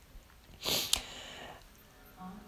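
A person sniffing once through the nose, followed by a small sharp click.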